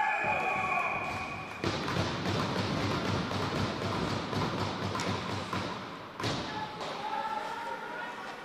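Ice hockey game sound in an indoor rink: a shout at the start and another near the end, with scattered thuds and knocks of sticks, puck and boards between. The sound changes abruptly about two seconds in and again about six seconds in.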